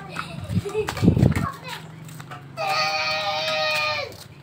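Children playing, with a low thump about a second in; from about two and a half seconds a child holds one long, steady high-pitched note until the end.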